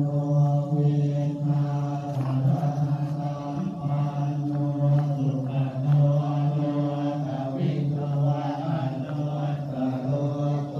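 Buddhist chanting in Pali: voices reciting together in a low, steady monotone with no break.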